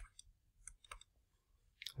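A few faint, scattered light clicks of a stylus tip tapping a tablet screen during handwriting, in near silence.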